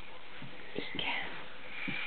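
A few soft taps and rustles from a child's hands on a thick board book as she lifts a page, with a faint breathy whisper.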